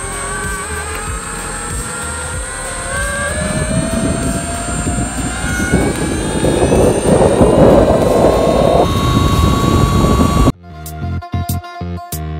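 Electric mountain board's brushless motor and belt drive whining, rising steadily in pitch as the board accelerates, over mounting wind and tyre rumble that peaks briefly. Near the end it cuts off suddenly to background music.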